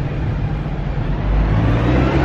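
Road traffic: a motor vehicle's low engine rumble that grows louder about one and a half seconds in.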